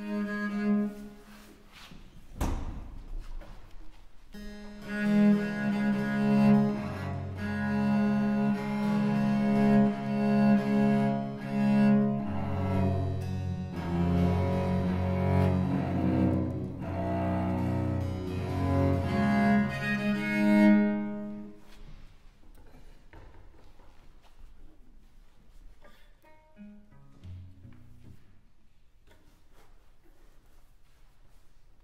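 A 1743 Andrea Castagneri Baroque cello, now five-stringed, being tuned: long, steady bowed notes, often two strings sounding together, with a knock about two seconds in. The bowing stops about two-thirds of the way through, and a brief soft note follows near the end.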